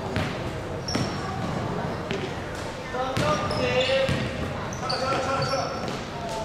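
Basketball bouncing on a wooden gym floor a few separate times, with short high sneaker squeaks and players' voices calling out during live play.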